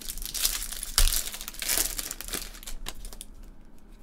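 Foil trading-card pack crinkling as it is torn open by hand, with the sharpest crackle about a second in, then fading after about three seconds.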